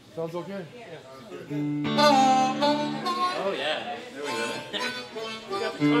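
Harmonica played into a microphone, starting about a second and a half in with long held chords and then bending figures, with guitar behind it.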